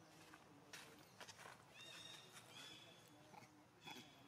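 Faint animal calls: a few short, high, slightly falling chirps in the second half, with a few faint clicks earlier.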